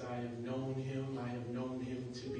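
A man singing long, drawn-out notes over a steady low instrumental accompaniment.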